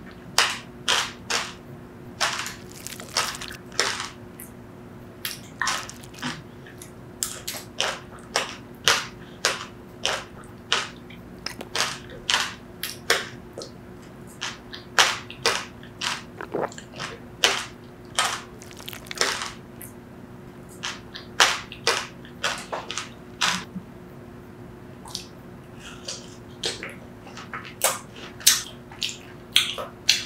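Close-miked chewing of sweet granadilla pulp, its small hard seeds cracking between the teeth in sharp, irregular crunchy clicks, several a second in short clusters.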